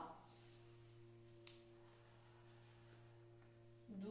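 Near silence: room tone with a faint steady hum and one faint click about a second and a half in.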